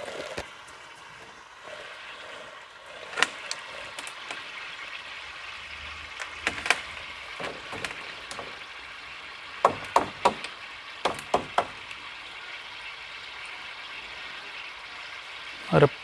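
A steady fizzing hiss of air bubbling through the water of an aquarium tank, broken by a scattering of sharp knocks and clicks, several in quick succession around ten and eleven seconds.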